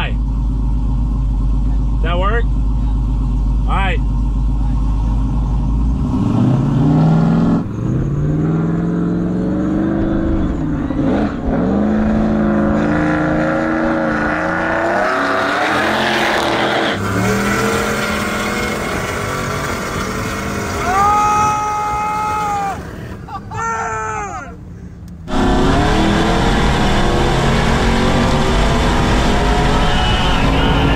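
Supercharged V8 engines in a roll race: a steady low engine rumble, then engines at full throttle, with the revs climbing in repeated rising sweeps through the gear changes. The sound changes abruptly several times between the inside of the Jeep Grand Cherokee Trackhawk's cabin and the outside.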